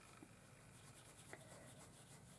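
Near silence: a size 3 round watercolour brush dabbing paint onto hot-pressed cotton rag paper, with a couple of faint ticks.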